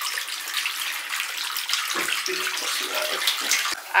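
Water running from the tap into a bathtub as it fills, a steady hiss throughout with a brief dip near the end.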